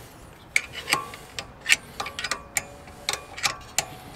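A run of irregular sharp metal clicks, some with a short ring, from a 13 mm wrench being worked on a rear brake caliper guide bolt while locking pliers hold the bolt's square end.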